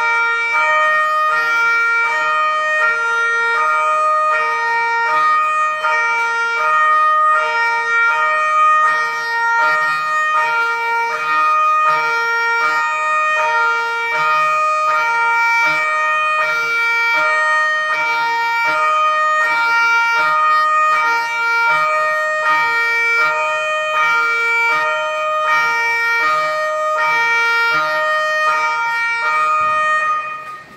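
Italian police cars' two-tone sirens sounding together, switching steadily between a low and a high note about twice a second. They cut off at the very end.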